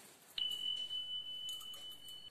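A single high chime-like tone that starts with a sharp click about a third of a second in. It holds one steady pitch without fading and is cut off abruptly.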